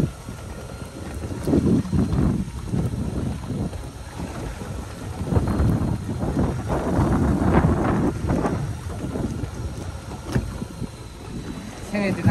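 Wind gusting across the microphone on a small open boat at sea, in irregular low surges.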